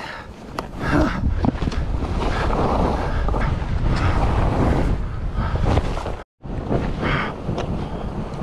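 Wind rushing over the microphone of a skier's camera while skis hiss and scrape through snow on a run. The sound cuts out completely for a moment about six seconds in, then comes back as quieter wind noise.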